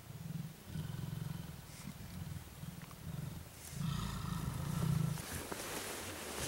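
Mountain gorilla giving a run of low rumbling calls, five or so back to back. From about four seconds in there is also a soft rustle of leaves.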